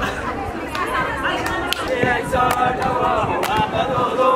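Many overlapping voices of a crowd, with scattered sharp claps.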